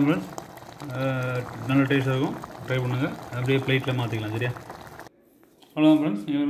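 A man's voice over the soft bubbling of noodle soup boiling in a steel pot; the sound cuts off suddenly about five seconds in.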